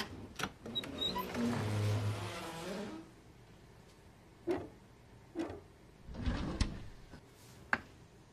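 A frosted-glass sliding cabinet door rolling along its track for about two seconds, then a few soft knocks as the furniture is handled. A drawer on metal runners is pulled out with a clatter near the end, and a short click follows.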